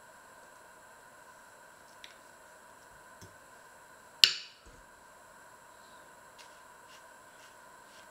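A plum stone dropped onto a porcelain plate: one sharp clink with a short ring about four seconds in. Around it, faint small ticks and squishes of a paring knife pitting plums, over a faint steady high tone.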